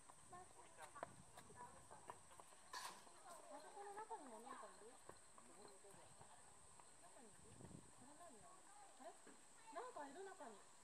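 Near silence: faint distant voices of people talking, with a few light clicks and knocks.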